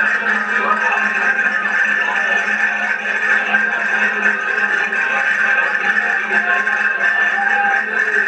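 Accordion playing a folk dance tune, with crowd chatter mixed in.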